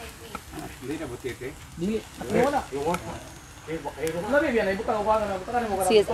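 Fish and a pufferfish sizzling on a wire grill over a wood-charcoal fire, with people talking over it from about a second in.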